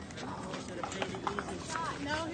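Pickleball paddles popping the hard plastic ball in a quick exchange of hits, several sharp knocks a few tenths of a second apart, with voices in the background.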